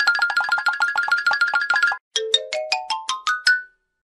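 A short cartoon-style musical jingle: a fast trill of repeated high notes, about ten a second for two seconds, then after a brief break a quick run of about eight notes climbing steadily in pitch, stopping just before the end.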